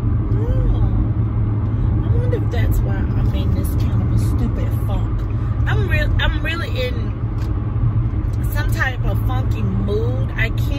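Steady low rumble of road and engine noise inside a moving car's cabin. A woman's voice comes through faintly now and then, most clearly about six and nine seconds in.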